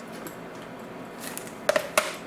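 A small metal parts tin with a plastic bag of parts in it being handled and set on a plastic drawer unit: a faint rustle, then two sharp clinks near the end.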